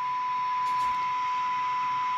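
Ranger RCI-2950 10 m radio receiving a weak FM test signal of 0.5 microvolt and playing its modulation as a steady single-pitch test tone over faint hiss: the receiver, its PLL now locking, is working.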